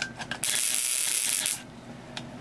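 Relay buzzer driving an ignition coil, with high-voltage sparks crackling across a brass spark gap in a rapid, loud buzz. It switches on about half a second in and cuts off suddenly about a second later.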